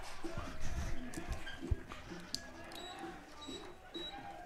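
Faint outdoor ballpark ambience: scattered distant voices with a few short clicks.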